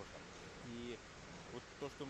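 Quiet pause with faint room tone of a large hall, broken by two brief, faint buzzing tones, one just under a second in and one near the end.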